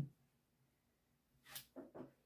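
Near silence: room tone, broken by a short faint sound about one and a half seconds in and another just before the end.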